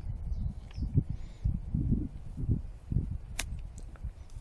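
Wind rumbling on the microphone in gusts, then near the end a single sharp click of a sand wedge striking a golf ball on a short pitch shot from the fairway.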